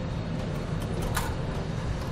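Steady low hum with a few light clicks and scrapes as a steel fish wire is pushed into a hole in the vehicle's frame rail.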